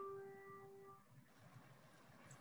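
A held musical note with a few higher overtones fades out within the first second, leaving near silence.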